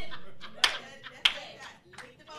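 Two sharp handclaps about half a second apart, between a man's calls of "hey".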